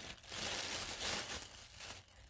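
Plastic wrapping crinkling and rustling as it is handled and pulled off a small figurine by hand.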